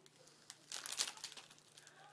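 Clear plastic snack wrapper crinkling as it is handled, in a few short clusters of crackles, loudest about a second in.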